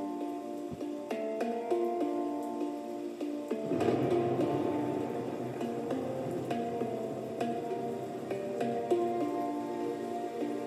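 Instrumental music playing through the Apple Studio Display's built-in speakers, with a run of held melodic notes. About four seconds in, a fuller part with bass comes in.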